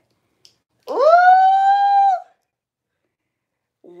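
A woman's voice giving one loud, high-pitched held squeal, about a second and a half long, that slides up at the start and then holds steady.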